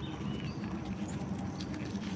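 Faint rustling and a few small clicks of a dry corn husk being handled by fingers, over a low steady background.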